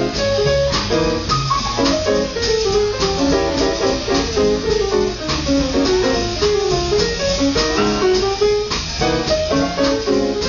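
Live swing band playing an instrumental passage, with upright bass, drum kit and guitar, and a melody line moving over a steady beat.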